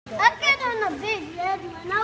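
Speech only: a child's high-pitched voice talking, with words not clear.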